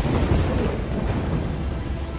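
A rumble of thunder over steady rain, loudest about half a second in and slowly fading.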